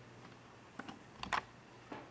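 A few separate key clicks from a computer keyboard being typed on, about four in all, the loudest about a second and a third in.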